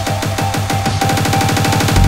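Hardtek/tribecore electronic dance music with a fast, pounding kick-drum beat. About halfway through, the beat tightens into a rapid drum roll, building up toward a drop.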